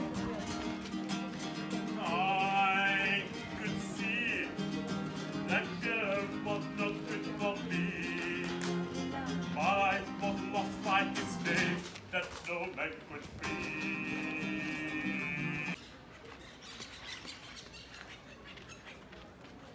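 Music: a singing voice with a wavering vibrato over guitar. It stops abruptly near the end, leaving quieter background sound.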